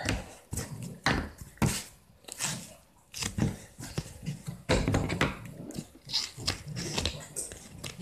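Paper and a roll of Vertofix adhesive tape being handled on a cutting mat: irregular rustles, taps and clicks, with a quieter pause about two to three seconds in.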